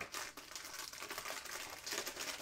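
Thin clear plastic packaging bag crinkling as a silicone mold is handled and slid out of it.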